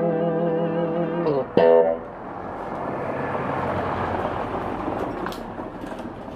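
Telecaster-style electric guitar played through a small combo amplifier: a held chord wavering in pitch slides down about a second in. A short, loud chord is struck, then the amp is left hissing with a few light clicks.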